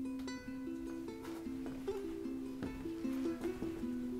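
Background music: a slow, gentle melody of held single notes.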